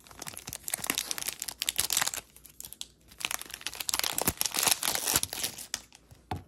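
A trading-card pack's wrapper crinkling and tearing as it is ripped open and the cards are pulled out. The sound comes in two crackly spells, with a short lull near the middle.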